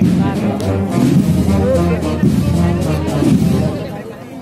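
Spanish banda de música (wind band) playing, with the brass to the fore; the music falls away for a moment right at the end.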